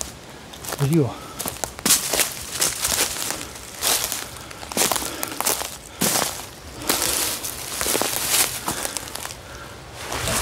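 Footsteps crunching through dry fallen leaves and twigs, about one step a second.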